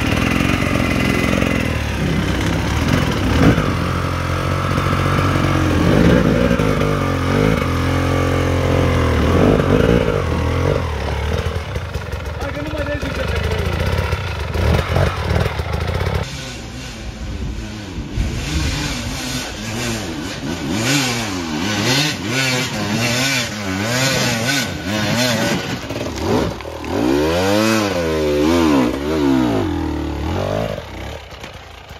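Enduro dirt bike engines revving up and down under load on steep rocky climbs. The revs swing in repeated waves, quicker and deeper in the later part.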